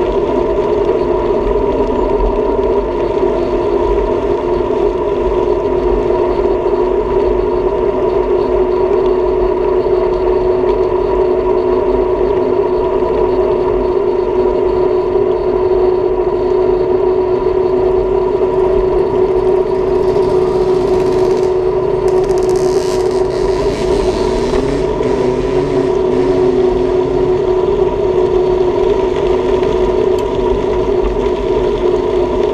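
Bicycle rolling steadily on asphalt, heard from a handlebar-mounted camera: a continuous whir and road rumble with wind buffeting the microphone. A brief hiss comes in about two-thirds of the way through.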